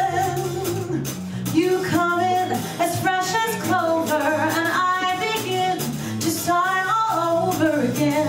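A woman singing a show tune live, backed by a small band of piano, bass, guitar and drums.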